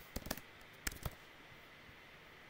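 Computer keyboard being typed on: about six short, sharp key clicks in quick succession within the first second or so.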